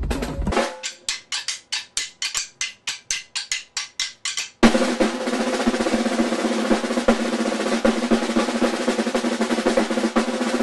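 Drum kit playing for a moment, then evenly spaced single drum strokes about four a second. Just under five seconds in, three snare drums played together with sticks take over in a fast, dense, continuous stream of strokes.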